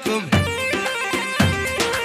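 Live Iraqi dabke dance music from an electronic keyboard: a melody of held notes stepping up and down over a repeating drum beat.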